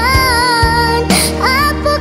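Minangkabau-language pop song: a young female voice sings a held note over a backing band with steady bass, then slides up into the next note about one and a half seconds in.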